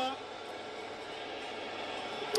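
Steady stadium crowd noise from the TV broadcast of a football match, played fairly quietly under the radio studio.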